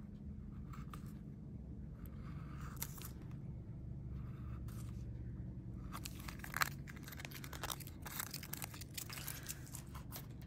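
Metal foil tape crinkling and crackling faintly as it is trimmed with a craft knife and folded over the edges of a tag, the crackles growing denser and sharper about six seconds in. A low steady hum runs underneath.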